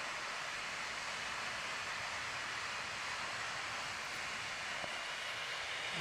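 Steady, even rushing noise with no distinct events and no change in level.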